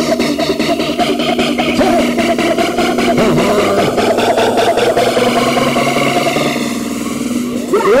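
Hardcore rave music from a DJ set: a fast beat under a held synth tone and slow sweeping synth sounds that rise like an engine revving. It thins out briefly just before the end.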